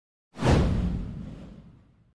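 Editing whoosh sound effect for a title animation: a sudden rush of noise over a deep rumble, starting about a third of a second in and fading away over about a second and a half.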